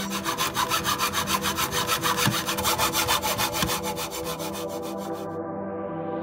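A hand saw cutting through a wooden dowel held in a plastic miter box, in quick, even back-and-forth strokes. The sawing stops about five seconds in.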